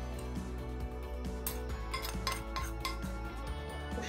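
Metal spoon scraping and clinking against a ceramic plate, with a cluster of sharp clinks in the middle.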